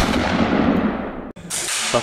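A hissing, static-like noise from a video transition effect that dulls and fades over about a second, then cuts off, followed by a single sharp crack about a second and a half in.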